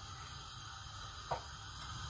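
Quiet kitchen background: a faint steady hiss, with one brief light click a little past halfway.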